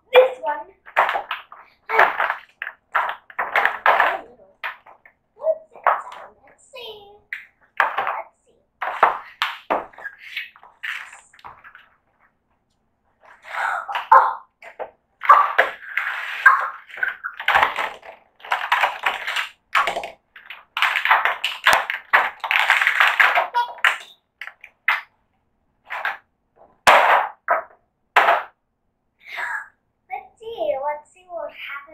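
A child talking in short bursts, mixed with handling noise as a small cardboard box is opened.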